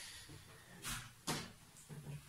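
Two faint, brief handling noises about a second in: an eraser being picked up from the desk.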